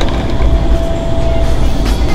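Loud, steady rush of air from an indoor skydiving vertical wind tunnel, with a steady hum running through it.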